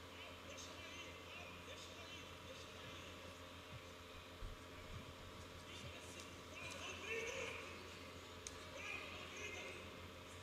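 Faint cage-side arena sound during an MMA bout: distant voices calling out, loudest about seven seconds in, over a steady low hum, with a couple of small knocks.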